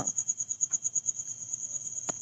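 A cricket chirping: a rapid, even train of high-pitched pulses that runs on steadily.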